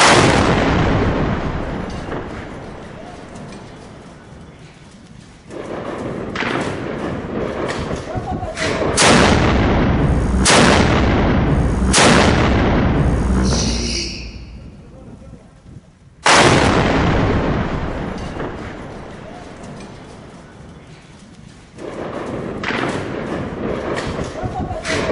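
Towed field howitzer firing twice: a loud blast at the start that echoes and dies away over about five seconds, and a second blast about sixteen seconds in that fades the same way. Between the shots, men's voices shouting.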